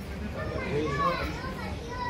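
Children's voices calling and chattering in a street, with some adult talk mixed in; the loudest high-pitched call comes about a second in.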